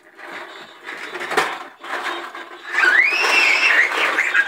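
Plastic toy push mower rattling as it rolls over a tile floor. Near the end comes a high-pitched squeal that rises and holds for about a second.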